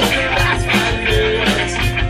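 A rock band playing live and loud in the emo and post-hardcore style: distorted electric guitars, bass and drums, with a steady beat of drum hits.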